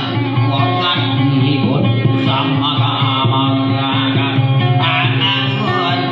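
Acoustic guitar plucked in a lively folk melody: dayunday accompaniment.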